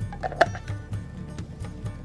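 Background music with a steady beat, over the small, quick clicks of a hand pepper mill being twisted to grind pepper, with one louder click about half a second in.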